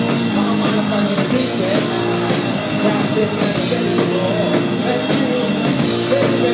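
Live rock music from a keyboard-and-drums duo: held keyboard chords over a steady drum-kit beat, with a wavering melodic line above.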